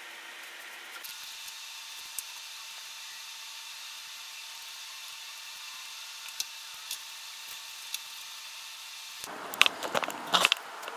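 Steady faint hiss with a few light ticks as epoxy is brushed from a plastic mixing cup onto the wooden edges of the base. Near the end a louder run of sharp clicks and rustling as fiberglass cloth is handled and pressed down over a corner.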